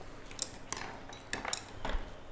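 Utensils clinking against a ceramic bowl: several light, separate clinks as a spoon is handled in a bowl of noodle soup.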